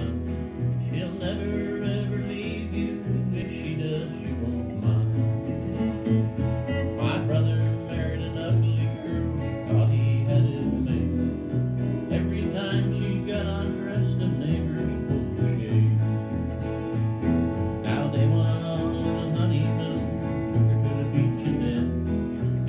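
A small band playing a country tune on acoustic guitar and electric guitar over a bass guitar line, with no singing.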